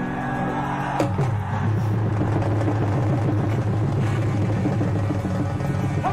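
Live Punjabi stage-show music in an instrumental stretch between sung lines: a sharp hit about a second in, then a steady deep bass note held under the band.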